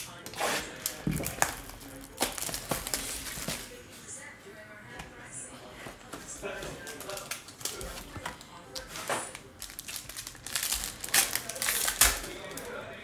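Crinkling and crackling of a foil trading-card pack wrapper and its cardboard box as they are opened and handled by hand. Irregular sharp crackles come throughout, loudest in a cluster near the end.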